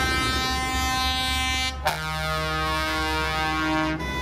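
Air horns in a tractor convoy sounding two long held blasts. The pitch changes abruptly just before the two-second mark. A low engine rumble runs underneath.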